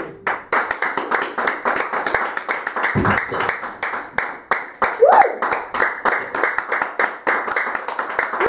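Audience applauding after the song ends, a dense, continuous patter of many hands. A dull low thump comes about three seconds in, and a voice calls out briefly about five seconds in.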